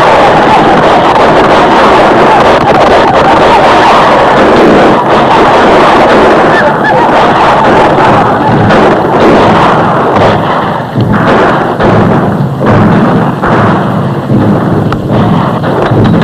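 Old film battle soundtrack: a loud, dense din of rifle fire and galloping horses, breaking up into separate shots over the last few seconds as the charge passes.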